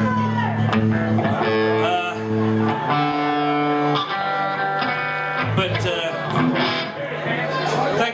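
Amplified electric guitar ringing out held chords and single notes between songs, with voices talking over it.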